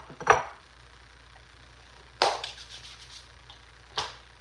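A few sharp knocks of tableware. The loudest, about two seconds in, is a single clink with a short ring as a metal fork is set down in a ceramic bowl.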